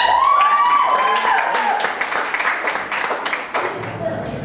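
Audience clapping and cheering, with drawn-out voice cheers at the start and a dense patter of hand claps through the middle.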